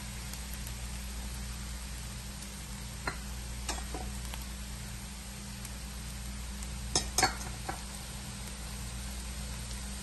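Chopped onions and curry leaves frying in a nonstick pan with a steady, even sizzle as spice powders are added. A few light clicks of a utensil against the pan come about three to four seconds in and again around seven seconds in.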